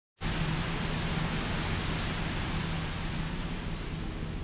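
Steady rushing of a forest stream's flowing water, cutting in suddenly out of dead silence just after the start.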